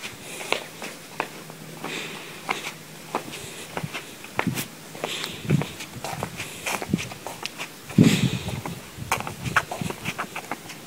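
Footsteps of sneakers on concrete and asphalt: irregular taps and scuffs, with a louder bump about eight seconds in.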